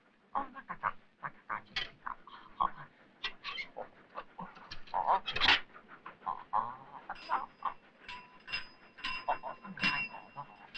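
A pony nosing into a glass box and eating from it: a string of short animal noises and sharp clicks. From about seven seconds in, a thin, steady high tone sounds alongside.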